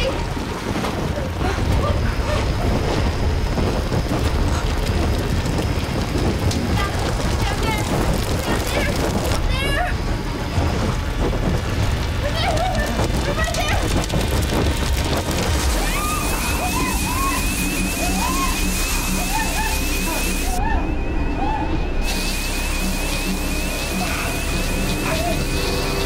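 Film soundtrack: a ceiling fire sprinkler, set off by a burning trash can held up to it, sprays water with a continuous rushing hiss, under music and people shouting. About two-thirds of the way in, a rapid, steady, high repeating beep begins.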